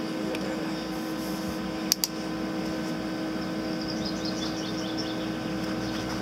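Arc welding machine switched on and humming steadily while idle, a mains hum with several overtones. Two sharp clicks come about two seconds in.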